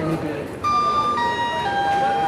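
Railway station public-address chime: three notes stepping down in pitch, each held about half a second, starting about half a second in, with the last note still sounding at the end.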